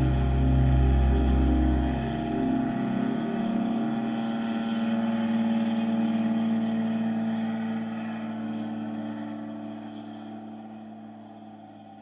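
Steady engine drone with several held tones. A deep rumble under it drops away about three seconds in, and the drone fades out toward the end.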